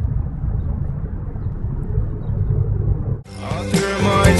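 A low, steady rumble with no music over it. Music cuts back in suddenly about three seconds in.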